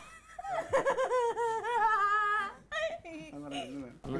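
A woman laughing, with a drawn-out wavering vocal laugh followed by shorter broken bursts of laughter and speech.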